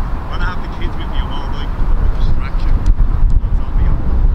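Wind buffeting the microphone as a steady low rumble. A few brief, faint high-pitched calls come in the first couple of seconds.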